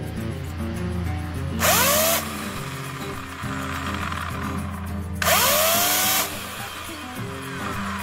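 Greenworks 18-inch 120-volt corded electric chainsaw revved twice in short bursts without cutting. Each time the motor whines up and stops almost at once when the trigger is released, the quick chain stop of an electric saw. Background music plays throughout.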